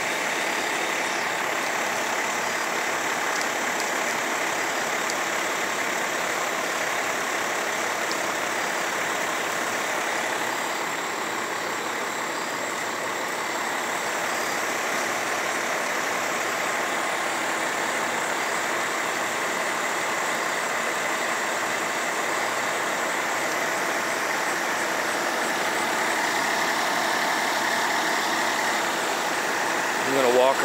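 Fire trucks' diesel engines running steadily at idle, a continuous even noise without any sudden sounds.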